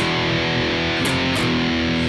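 Distorted electric guitar playing power chords: a chord is struck and rings out, then is re-picked twice about a second in and shifts to another chord.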